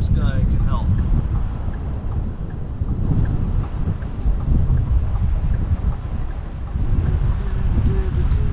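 Wind buffeting the microphone: a loud, uneven low rumble that rises and falls throughout.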